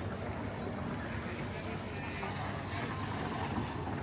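Steady outdoor river noise with wind buffeting the microphone, under the low hum of a small motor launch following a rowing boat.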